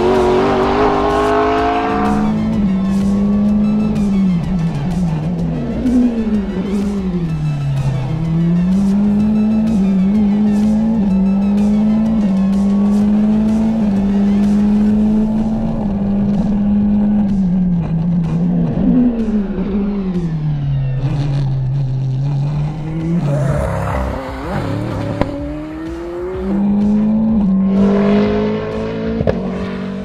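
McLaren 720S GT3X's twin-turbo V8 racing engine at full effort on a hot lap. Its note climbs and falls through the gears and drops sharply twice, about a third of the way in and again about two-thirds through, as the car brakes and downshifts for corners.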